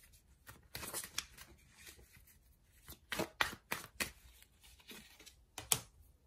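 Tarot cards being handled: scattered short flicks and taps of card stock, the sharpest near the end as a card is drawn and laid down.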